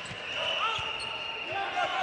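Volleyball arena crowd noise during a rally, with a steady high whistle-like tone held throughout and a few faint voices. The ball is served and received.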